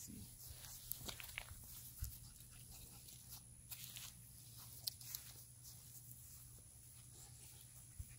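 Very faint scattered rustles and light ticks of footsteps and small puppies moving on grass, over a low steady hum.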